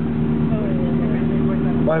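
Rally car engine idling steadily, a Renault Clio by its looks, with an even, unchanging hum.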